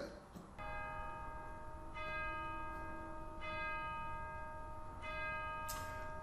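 A bell struck four times, about every one and a half seconds, each stroke ringing on and overlapping the next.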